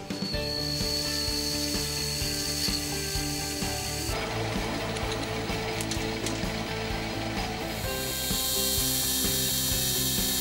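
Mini-lathe running, its gear train whining steadily, while cutting an EN8 carbon steel axle: it is parted off, then given a light facing cut. The sound changes character about four seconds in and again about eight seconds in as the cuts change.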